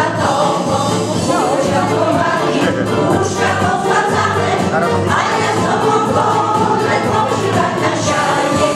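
Women's folk choir singing a song together, with several voices holding long sustained notes.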